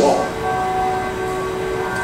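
A steady hum made of several held tones, with the tail of a man's spoken word at the very start.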